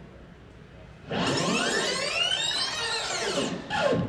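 Rewind sound effect from a projected video, played over loudspeakers in a room: a whirring sweep that starts about a second in, rising and then falling in pitch, and lasting about two and a half seconds.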